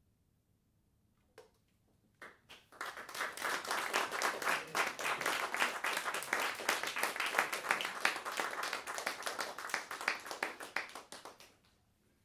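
Small audience applauding: a few scattered first claps about a second and a half in, then steady applause that fades out near the end.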